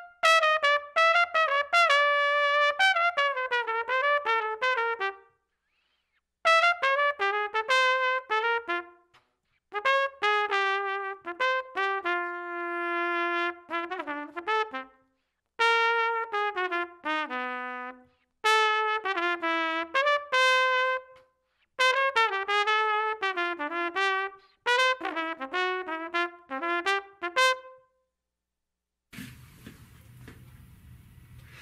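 Solo trumpet playing jazz lines with no accompaniment, in phrases of a few seconds separated by short breaks for breath, with one long held note about midway. About a second before the end the playing gives way to faint room tone.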